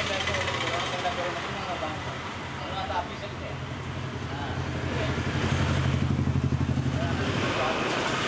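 An engine running steadily, growing louder with a quick throbbing pulse from about five seconds in, under a murmur of voices.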